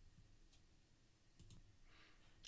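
Near silence: faint room tone with two faint clicks, about half a second and a second and a half in.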